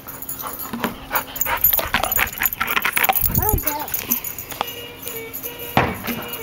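Yellow Labrador retriever giving a short whining call about halfway through, among a run of sharp clicks and knocks.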